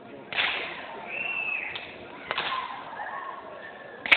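Cinema audience cheering and whistling at an on-screen kiss. A dense crowd noise swells sharply about a third of a second in and again a little past two seconds, with a few whistles over it.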